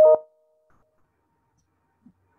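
A single short electronic beep, then dead silence as the call audio drops out.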